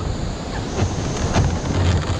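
Steady rush of a whitewater rapid, with a few light knocks and scrapes as a plastic whitewater kayak is shifted on the rock.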